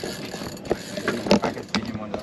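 Spinning reel being worked against a hooked fish, its gears and drag clicking, with a few sharp knocks.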